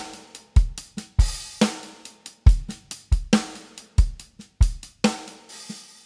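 Sampled acoustic drum kit (Native Instruments Studio Drummer, Session Kit) playing a preset MIDI groove: kick, snare and hi-hat in a steady beat. Near the end a cymbal rings and fades out as playback stops.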